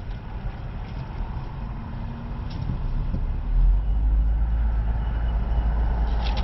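A car pulling away from a standstill, heard from inside the cabin: a steady low rumble of engine and road noise that swells sharply louder about three and a half seconds in as the car gets moving.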